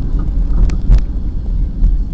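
Steady low road and engine rumble heard inside a moving car.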